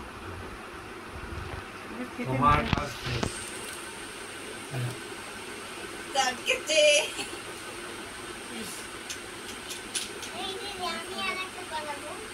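Short, scattered bits of quiet talk, children's voices among them, over a steady background hiss.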